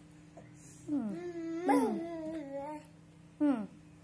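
A toddler vocalising: a long call with sliding, wavering pitch starting about a second in and lasting nearly two seconds, then a short falling squeal near the end.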